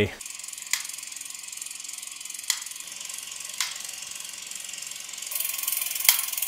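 Vintage mechanical cine camera running, a steady mechanical whirr from its film-transport mechanism. Three single clicks sound through it, and it grows louder about five seconds in.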